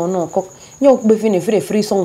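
A woman speaking in a pleading voice, over a steady high-pitched cricket chirp in the background.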